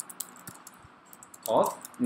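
Irregular keystrokes on a computer keyboard, typing at a steady pace, with a spoken word near the end.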